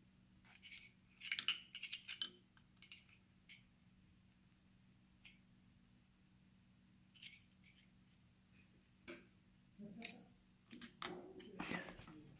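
Light metallic clicks and taps from a Bridgeport milling head's quill feed mechanism as it is worked by hand to test the feed trip after adjusting its screw. The clicks come in two loose clusters, one about a second in and one near the end, over a faint steady hum.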